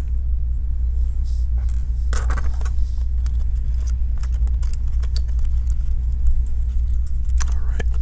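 Light clicks and rattles of small metal parts as a laptop motherboard is unscrewed and lifted out of its chassis, over a steady low hum.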